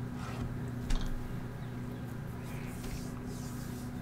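Steady low electrical hum with faint room noise, and a single sharp click about a second in.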